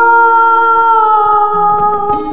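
A woman's voice holding one long sung note, dipping slightly in pitch about a second in.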